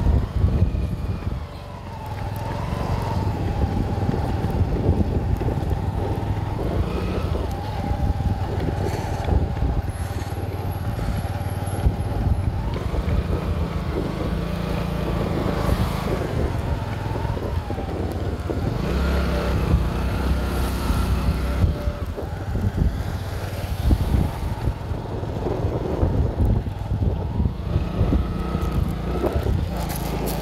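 Steady engine and road rumble of a slow-moving vehicle pacing a runner, with wind buffeting the microphone. The engine pitch rises and falls slightly a few times.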